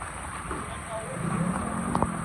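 Heavy rain with a vehicle engine revving up, its pitch slowly rising and getting louder from about a second in.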